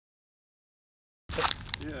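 Dead silence for over a second. Then the sound cuts in with wind rumbling on the microphone and a few sharp clicks of a hand handling the glider-mounted camera. Near the end a man says a word.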